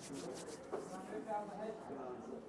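Hands being rubbed together in front of a bank of table microphones: a series of dry rustling strokes.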